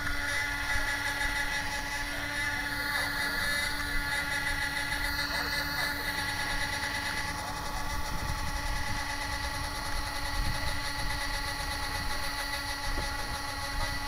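A steady whine of several fixed tones that does not change, over an uneven low rumble with scattered soft knocks from a body-worn camera moving through grass and pine branches.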